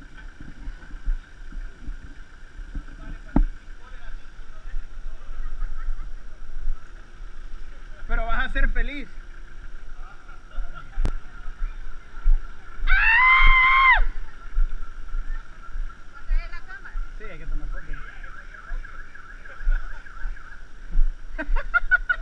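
Outdoor ambience around a group of people: scattered voices at a distance, a steady high-pitched drone, and low rumble of wind on the camera microphone. About 13 seconds in comes a loud, high call lasting about a second.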